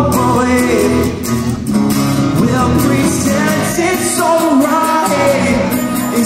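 Live acoustic rock band: strummed acoustic guitars with a singing voice carrying the melody.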